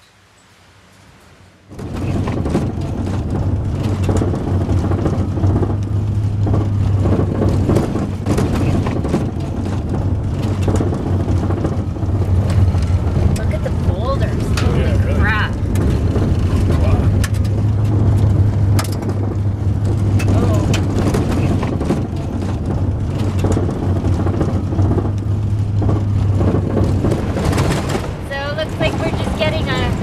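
In-cab road noise of a van driving fast on a gravel road: a steady low drone with a constant crackle and patter of gravel under the tyres and against the underbody. It cuts in suddenly about two seconds in, after a quiet start.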